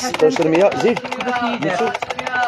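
Voices with a rapid, uneven run of sharp clicks or taps behind them.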